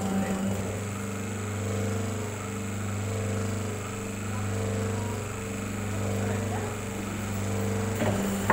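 Electric motor of a hydraulic paper plate making machine running with a steady hum that swells and eases every couple of seconds.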